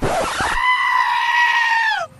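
A single long, high-pitched scream that starts with a harsh rasp, then holds one steady pitch for over a second before dropping off at the end.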